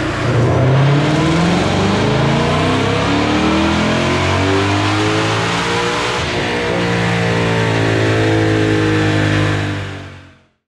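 2020 Ford Shelby GT500's supercharged 5.2-litre V8 at full throttle on a chassis dyno, its pitch climbing steadily through the rev range in a power pull. The engine drops away just at the end as the run finishes.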